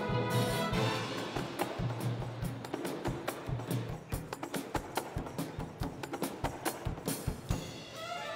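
Live orchestra with strings and percussion playing: held notes at first, then from about halfway a quick run of sharp percussion strikes over the ensemble.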